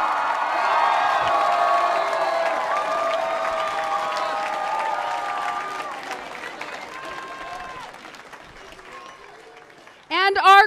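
Applause from a large audience mixed with cheering from many high children's voices, acknowledging a name just announced. It is loud for the first half and dies away over the last few seconds.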